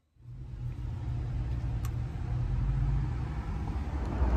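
Steady low rumble of a car on the move, heard from inside the cabin, with a single faint click about two seconds in.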